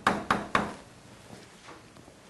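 Chalk tapping on a blackboard while writing: three sharp taps in the first half-second, then a faint tap later on.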